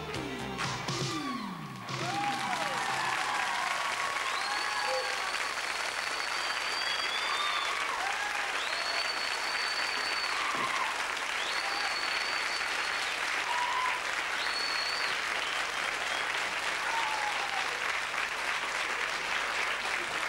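A pop song's last notes fade out, then a studio audience applauds steadily after the live performance, with cheers and several long, high whistles during the first half.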